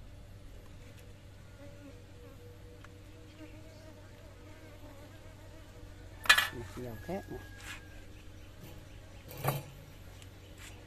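Honeybees buzzing around opened honeycomb frames, a steady faint wavering hum. Two sharp knocks stand out, about six seconds in and again near the end.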